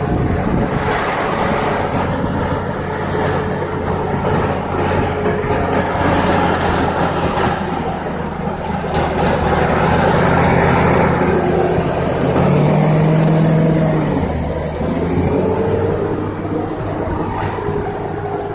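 Diesel engine of a wheel loader working hard as it pushes snow with its front bucket; the engine gets louder and revs up partway through.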